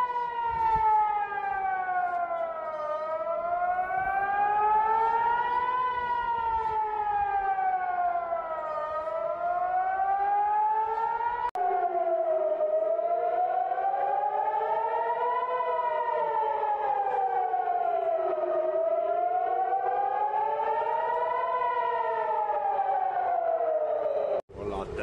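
Civil-defence air-raid siren wailing, its pitch rising and falling about every six seconds, sounding a missile alert. About halfway through, a sudden cut jumps to another recording of the same kind of siren.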